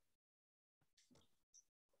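Near silence, with stretches of complete dead air.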